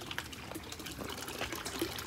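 Running water trickling and splashing steadily, with small droplet ticks over a soft continuous wash.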